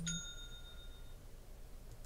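A single bell-like ding that rings out and fades away within about a second.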